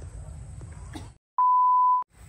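A low background rumble stops suddenly. After a brief silence, a single steady 1 kHz test-pattern tone, the bleep that goes with TV colour bars, sounds loudly for about half a second to the end.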